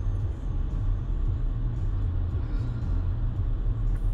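Steady low rumble of road and engine noise inside a moving car's cabin, with tyre hiss on the road surface.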